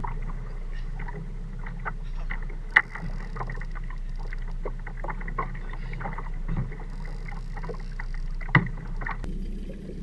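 Water slapping and knocking against a small boat's hull in irregular short knocks and clicks over a low steady hum, with two sharper knocks about three and eight and a half seconds in.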